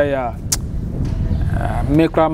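A man's voice trails off and there is a short sharp click. Then comes the low rumble of street traffic, with a car going by.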